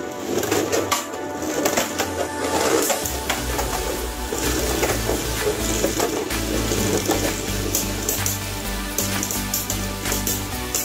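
Two Beyblade spinning tops whirring and scraping around a plastic stadium, with repeated clacks as they collide, under background music with a steady bass line that comes in about three seconds in.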